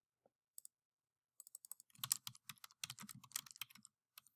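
Computer keyboard typing: a quick run of faint keystrokes starting about a second and a half in.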